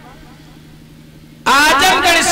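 A short pause filled only by a faint steady low hum, then about one and a half seconds in a man's voice comes in loudly through a microphone and loudspeaker.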